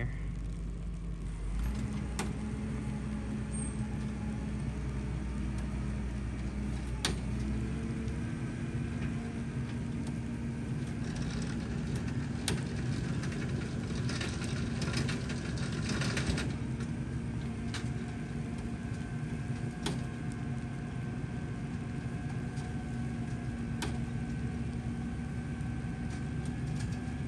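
Tractor engine running steadily while it drives a Meyer forage wagon unloading chopped triticale silage out the back. The engine speed steps up shortly after the start and again about eight seconds in, with occasional sharp clicks from the machinery.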